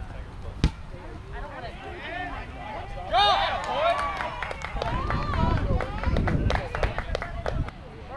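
A rubber kickball kicked once with a sharp thump about half a second in, followed a few seconds later by players shouting on the field and a scatter of quick sharp taps.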